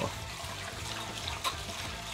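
Wire whisk stirring a thick grain mash in a stainless steel brew kettle: a steady wet swishing.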